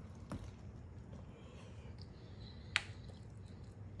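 Quiet room tone with a few faint, small clicks; the sharpest is a single brief click about three-quarters of the way through.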